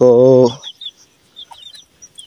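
Young domestic chicken chicks peeping: short, high cheeps that come in quick runs.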